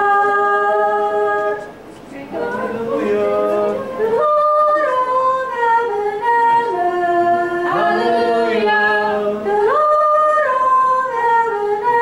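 A high voice, likely a woman's, singing unaccompanied in long held notes that step up and down in pitch, with a short pause about two seconds in.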